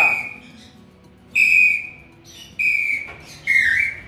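Hand-held bird-call whistle (pio) blown in four clear whistled notes, each about half a second long and about a second apart; the last note dips slightly in pitch.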